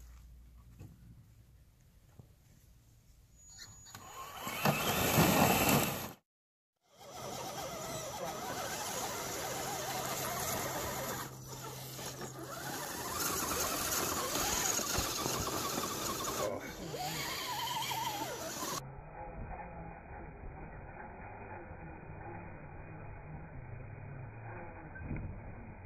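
Small electric motors and geared drivetrains of radio-controlled crawler trucks whirring as they climb loose dirt, broken by edit cuts. There is a loud burst about five seconds in, then the sound cuts out to silence for under a second.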